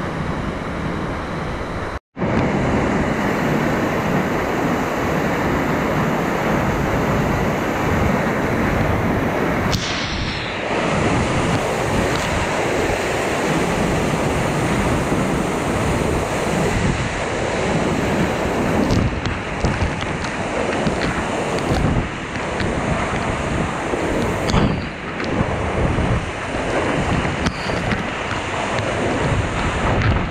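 Waterfall at very close range: a loud, steady rush of falling water, with spray hitting the camera in the flow. The sound cuts out for an instant about two seconds in.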